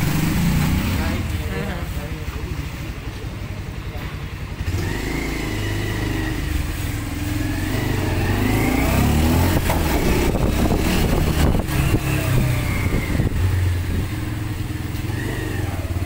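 Motorcycle engine running while being ridden along, a steady low rumble that grows louder about four or five seconds in, with faint voices in the background.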